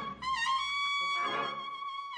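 Cornetas of a Spanish Holy Week cornetas y tambores band holding a long, high note, with lower cornet voices joining in a chord about a second in; the drums are silent here.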